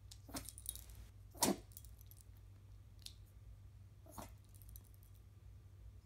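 Yorkshire terrier sneezing in a few short, sharp bursts, the loudest about a second and a half in, with the metal tags on its collar jingling.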